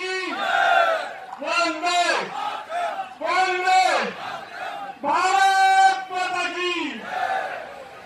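Slogans shouted over a loudspeaker: a man's voice in a series of long, drawn-out calls, about one every one and a half to two seconds, with the crowd behind. The calls die away near the end.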